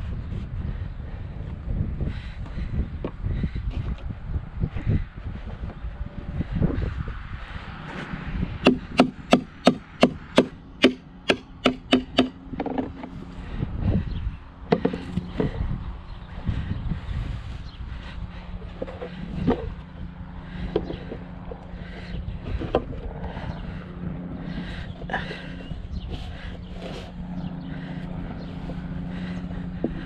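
A hammer driving a metal landscape spike through edging into the ground: a quick run of about a dozen sharp strikes, about three a second, some eight seconds in, followed by a few scattered knocks.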